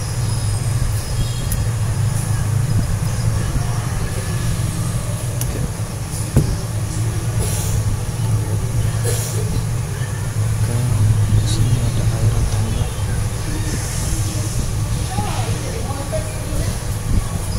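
A steady low hum of background noise, with a single sharp click about six seconds in.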